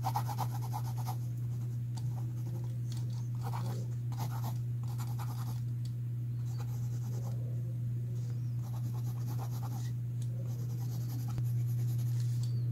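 Mechanical pencil lead scratching across sketchbook paper in short bursts of strokes, with a steady low hum underneath.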